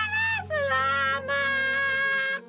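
A sung voice holding three long notes in turn, with no clear words, over a low steady backing note: a cartoon songbird's singing.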